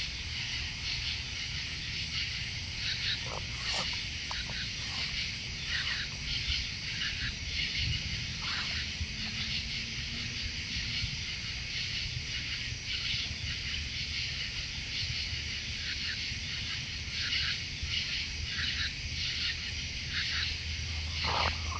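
Raccoons crunching and chewing food scattered on the ground close to the microphone, in irregular short bursts, over a steady chorus of night insects.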